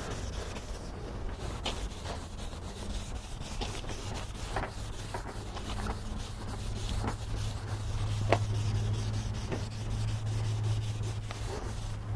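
600-grit sandpaper rubbed by hand over a plastic car headlight lens, wet-sanding off the yellowed oxidation: a steady scratchy rubbing of back-and-forth strokes. A low steady hum runs underneath, stronger in the second half.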